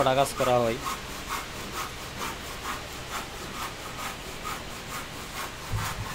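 A few words of speech, then faint repeated rubbing on wood in short strokes about two a second, with a low thump near the end.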